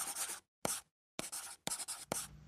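Scratchy rustling noise in about four short bursts, broken by brief gaps of dead silence.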